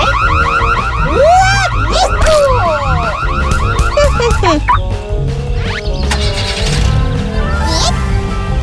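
Cartoon car-alarm sound effect: a fast warbling alarm that goes off as the toy car's door is tried and stops about five seconds in. Several swooping pitch glides run over it, with background music throughout.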